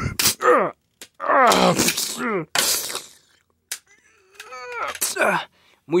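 A person's voice making fight noises for toy action figures: strained groans and grunts that slide down in pitch, with a hissing burst in the middle and a couple of sharp knocks near the start and about two-thirds of the way through.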